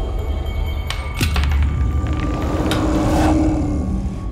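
Dark horror-trailer score: a deep, steady rumble with a few sharp hits about a second in and again near three seconds, and a held tone toward the end.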